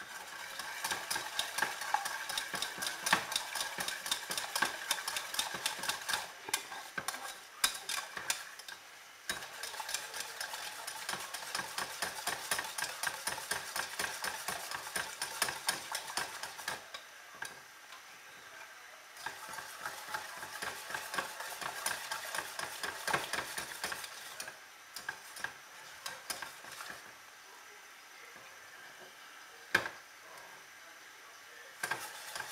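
Scrambled eggs being stirred in a stainless steel saucepan over the heat, the utensil scraping and clinking against the pan in quick, continuous strokes. The stirring slows briefly about 17 seconds in and eases off near the end.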